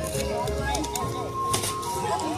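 Background music with voices of a party crowd; about one and a half seconds in, a single sharp knock as a toy bat strikes a piñata.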